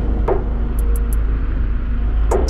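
Kugoo G2 Pro electric scooter riding over a paved path: a steady low rumble of the wheels on the pavement with a faint hum. A few short high chirps come about a second in.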